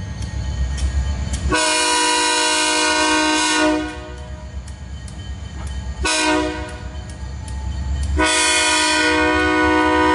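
Maryland Midland diesel locomotive's multi-chime air horn blowing a long blast, a short one, then another long one, the pattern of a grade-crossing signal, over the steady low rumble of the diesel engine, which comes through between the blasts.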